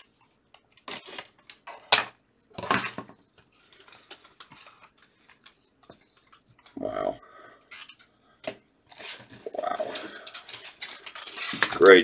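Plastic rustling and sharp clicks as gloved hands handle a sealed 1975 Topps cello pack in its plastic protective sleeve. The clicks are scattered at first and come thick and fast near the end.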